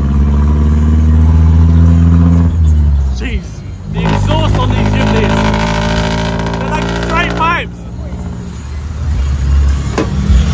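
Jeepney engine running steadily, its pitch sagging about three seconds in as it eases off, then picking up again. From about four seconds in until near eight seconds, a voice carries over the engine, rising and falling in pitch.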